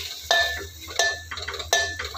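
Metal ladle clinking against the side of a metal cooking pot while stirring diced bottle gourd: three knocks, about one every 0.7 s, each with a short metallic ring.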